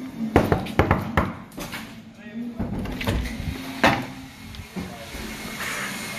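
A door being opened and walked through, with phone handling noise: a quick run of knocks and clicks in the first second or so, then single knocks about three and four seconds in.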